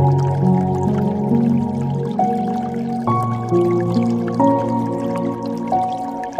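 Slow, gentle piano music: low sustained notes and chords under a quiet melody, a new note or chord every half second to a second, with faint water dripping and trickling beneath.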